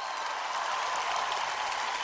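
Large arena audience applauding steadily after the choir's song ends.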